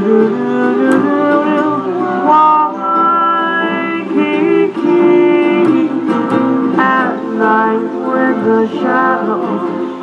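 Live Hawaiian band playing a slow ballad on ukulele, acoustic guitar and upright bass; a sung line ends on a held note at the start and the band plays on under a held, bending melody line.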